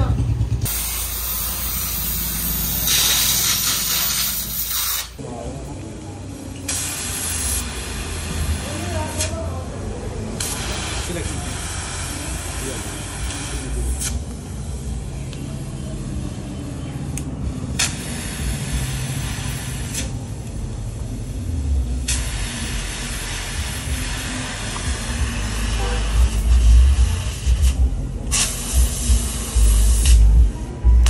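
Gas welding torch hissing in stretches of a few seconds with short breaks while it heats and welds a steel motorcycle exhaust pipe. Heavy low thuds come in near the end.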